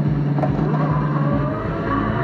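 Race-car engine sound effect revving up in pitch, played through the pinball machine's speakers as part of its game audio, with a sharp click about half a second in.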